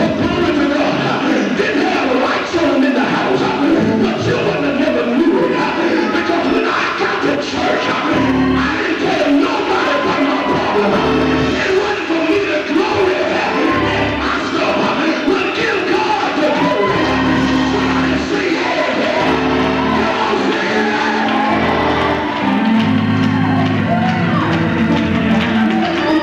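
Live church music in a large hall, with sustained low notes held for a second or more and congregation voices singing and calling out over it.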